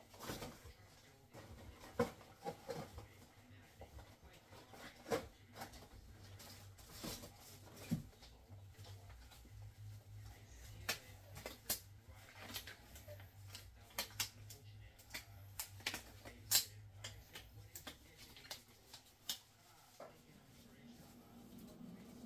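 Quiet handling sounds: scattered light clicks and knocks as something is taken down from a kitchen cupboard, then the rustle and snap of disposable gloves being pulled on.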